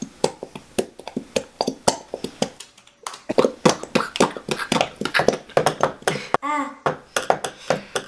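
A plastic glue bottle squeezed out over a plastic mixing bowl: many light, irregular clicks and taps of handled plastic, with one short squeak late on.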